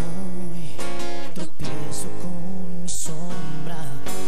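Acoustic guitar strummed in the instrumental introduction of a slow ballad, over sustained low notes, just before the vocal comes in.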